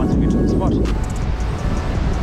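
Wind buffeting an action camera's microphone on an exposed sea cliff, a steady low rumble.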